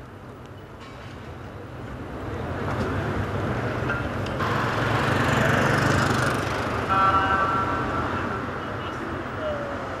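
City street traffic noise, a vehicle passing that swells to its loudest about halfway through and then fades, with background voices.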